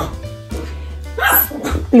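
Steady background music, with a brief noisy vocal sound from a pet about a second in and another just before the end.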